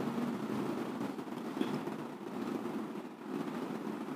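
Steady low background hum picked up by the microphone during a pause in speech, with a couple of faint clicks.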